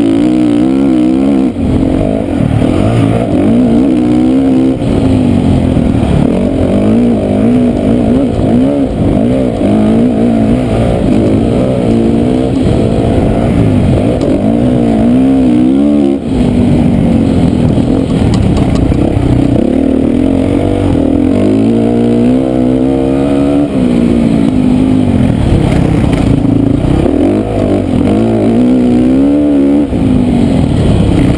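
Motocross dirt bike engine at race pace, heard close up from a camera mounted on the bike: the revs rise and fall constantly through gear changes, corners and jumps, with a brief drop in the engine note about 16 seconds in.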